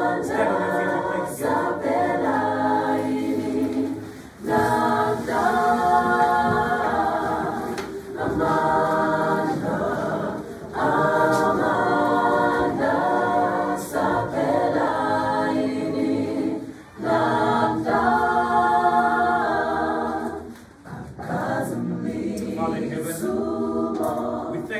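A mixed choir of men's and women's voices singing unaccompanied in harmony, in phrases a few seconds long with short breaks between them.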